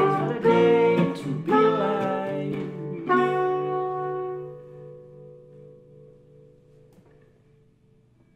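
Trumpet and acoustic guitar playing the closing bars of an indie-folk song. About three seconds in they end on a final chord that rings out and fades away over the next few seconds.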